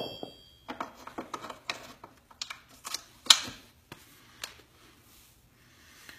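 Metal clicks and clinks of an aftermarket motorcycle footpeg and its pivot pin being handled and fitted to the bike's footpeg mount, without the return spring. The sharpest knock comes a little over three seconds in.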